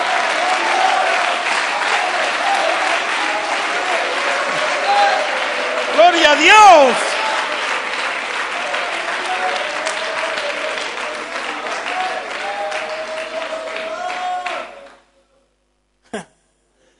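Congregation applauding and calling out praise in many overlapping voices, with one loud shout rising and falling in pitch about six seconds in. The sound cuts off abruptly near the end.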